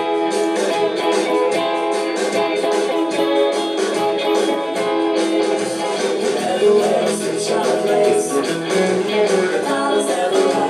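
Stratocaster-style electric guitar playing a steady strummed rhythm, coming in on the count of three.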